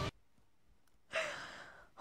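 A woman sighs about a second in: a single breathy exhale that fades away, after a stretch of near silence.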